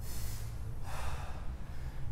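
A man's breathing during a calf-raise set: one long breath through the mouth lasting about a second at the start, over a steady low hum.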